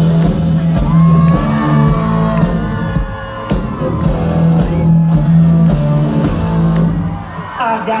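Live country band playing loudly through a concert sound system, a steady bass note held under guitars. The lead vocal comes back in right at the end.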